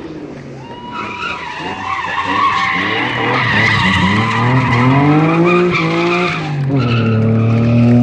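Drift car sliding with its tyres squealing while the engine revs hard, its pitch climbing for a couple of seconds. Near the end the squeal stops and the revs drop, then hold steady.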